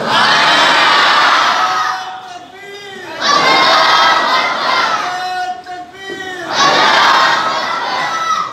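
A large group of men shouting a response in unison three times, each loud shout lasting about two seconds, with a single man's voice calling out briefly in the gaps between them.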